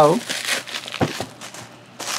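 Plastic bubble wrap crinkling as it is pulled off a small cardboard box, with two soft knocks about a second in.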